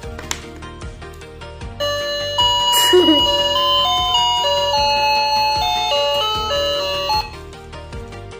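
Electronic toy music box playing a chime-like melody of held single notes. It starts about two seconds in and cuts off about seven seconds in, over quieter background music.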